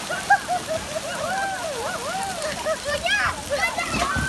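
Children's voices calling and squealing over steady splashing and running water in a splash pool, with a brief sharp slap near the start.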